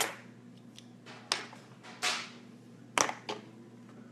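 Close handling noises: a series of sharp taps and short swishes, about six in four seconds, some fading out like a brush stroke, over a steady low hum.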